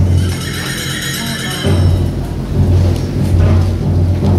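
Concert band playing. A high, shrill held sound rings out in the first second and a half while the deep bass drops back, then the deep bass notes return.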